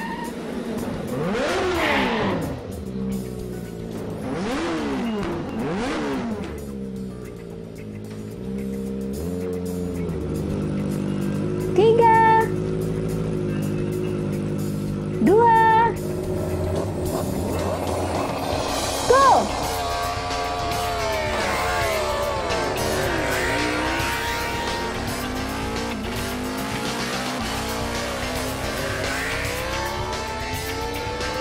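Motorcycle engines revving at a drag-race start line, their pitch rising and falling. Two short, loud revs come about 12 and 15 seconds in, and from about 20 seconds on several engines accelerate away together with tyre squeal.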